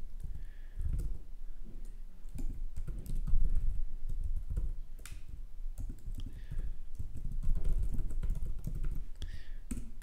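Computer keyboard typing: irregular, scattered keystroke clicks as a line of code is entered.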